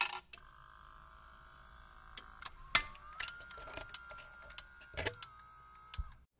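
A jukebox's record-changer mechanism at work: scattered mechanical clicks over a faint steady motor whine, which rises slightly in pitch about three seconds in. There is a louder click near the middle and another near the end.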